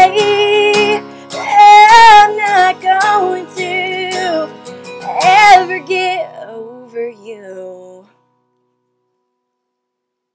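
A woman singing the closing lines of a country ballad to acoustic guitar, holding the last notes with vibrato. The song fades out and stops about eight seconds in.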